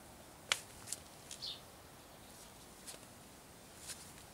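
A few short, sharp clicks at irregular intervals over a faint outdoor background, the loudest about half a second in. A brief high bird chirp comes about a second and a half in.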